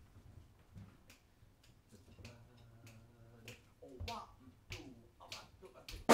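Faint finger snaps keeping a steady tempo, just under two snaps a second, counting off the tune just before the jazz band comes in. A faint voice murmurs among the snaps.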